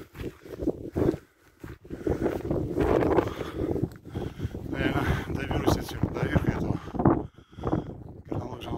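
A man's voice talking indistinctly, with wind buffeting the microphone.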